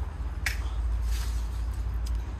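A single sharp click or snap about half a second in, followed by a short hiss, over a steady low rumble.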